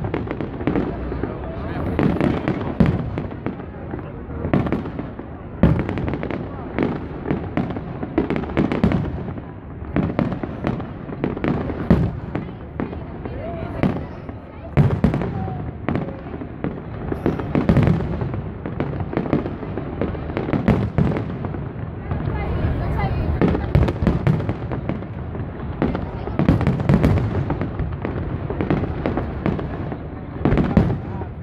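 Aerial firework shells bursting in a long barrage, dozens of sharp bangs at irregular intervals, roughly one a second, over a continuous rumble. A crowd of spectators talks throughout.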